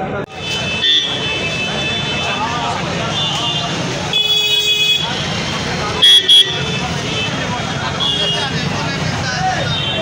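Busy street crowd chattering, with vehicle horns honking again and again, some short toots and some held longer. The loudest are two short, sharp blasts about six seconds in.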